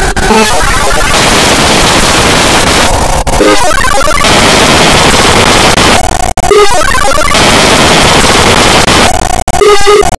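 Very loud, heavily distorted and clipped audio-effect noise: a harsh wall of sound from an effects-processed cartoon soundtrack. A garbled, pitched fragment breaks through about every three seconds.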